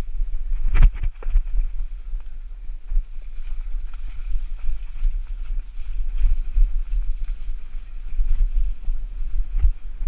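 Mountain bike rolling over a rough grassy trail, heard from a handlebar-mounted camera: a steady low rumble of wind and tyres on the microphone, with the bike rattling and knocking over bumps. A hard jolt comes about a second in, and another sharp knock near the end.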